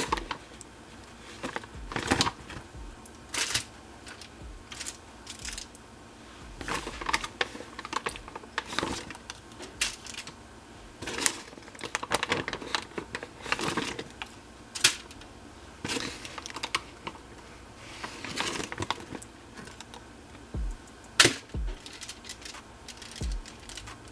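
Aluminum foil lining a baking pan crinkling and rustling as raw chicken pieces are handled and laid on it, in irregular short crackles and clicks.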